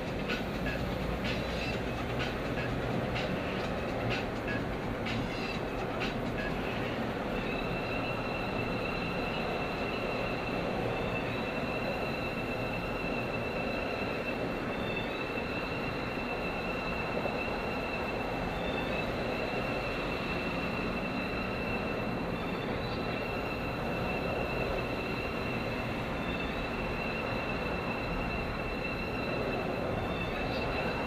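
Steady road and engine noise inside a car's cabin while driving on a freeway, picked up by a dash-mounted camera's microphone. There are a few faint clicks in the first seconds, and from several seconds in a thin, high, steady whine.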